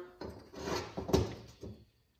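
Carburetor parts being handled on a workbench: light knocks and rustling, with one sharp click a little after a second in.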